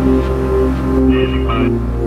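Background music of sustained synth tones over a deep steady drone, with a man's voice beginning near the end.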